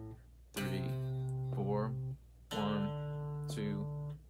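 Electric guitar played fingerstyle: two arpeggiated chords, each begun on a bass note, about two seconds apart, each left ringing about a second and a half.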